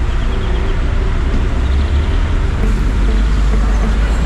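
Steady road traffic noise with a heavy low rumble and no distinct passing events.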